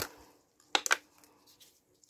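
Plastic clips clattering together as a hand rummages through a bucket of them, with a few sharp clicks close together about a second in.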